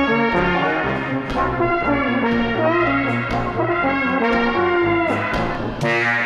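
Trombone playing a melody of short and held notes over a low accompaniment with a regular beat. The music cuts off abruptly just before the end.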